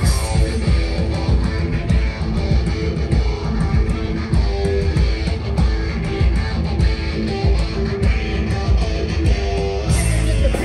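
Live rock band playing loudly: a heavy, repeating electric guitar riff over bass guitar and drums, with the full band coming in right at the start.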